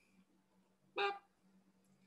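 A man's voice saying a single short, drawn-out "bye" about a second in. Otherwise near silence with a faint steady hum.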